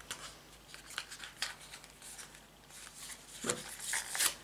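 Faint clicks and rustles of a small cosmetic sample tube and its cardboard box being squeezed and handled while trying to get the last of the serum out.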